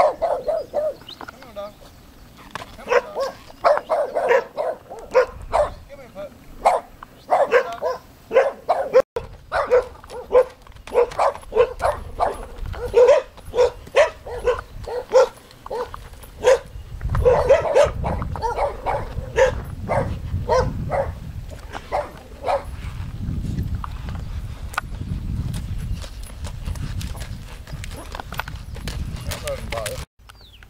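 A small dog barking over and over in quick runs through most of the stretch, the barks thinning out near the end. From about halfway a low rumble also comes in under the barking.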